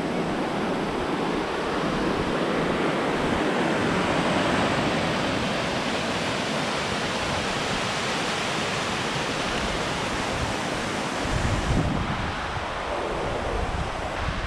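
Steady rush of a shallow, rocky mountain stream running over boulders, with a brief low wind buffet on the microphone near the end.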